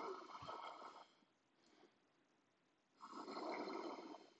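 A person breathing hard: two long, breathy breaths about three seconds apart, the effortful breathing of someone holding a wheel pose (full back bend).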